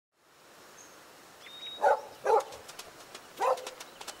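A dog barking three times: two quick barks about two seconds in and a third about a second later, over faint outdoor background.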